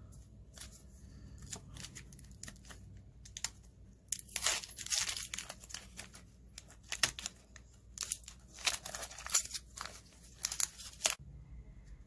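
Wax paper wrapper of a 1990 Donruss baseball card pack being torn open and crinkled by hand, starting about four seconds in as a run of short, irregular tearing and crackling bursts.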